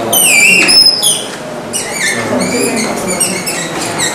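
Dry-erase marker squeaking on a whiteboard as words are written: a run of short, high-pitched squeals, one per stroke. The loudest squeals come in the first second, with a short pause before a second run.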